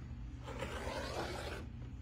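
Rotary cutter blade rolling through a quilt block's fabric along the edge of an acrylic ruler, one scraping cut lasting about a second, trimming the block to size.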